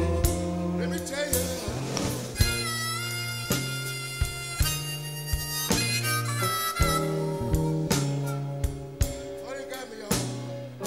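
A slow blues band plays an instrumental passage. A lead instrument plays long, bending notes over bass guitar and drums.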